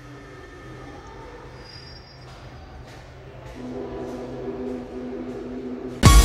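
Rubber-tyred VAL metro train in a tunnel, its equipment humming steadily. About halfway through a new steady tone comes in and the sound grows louder.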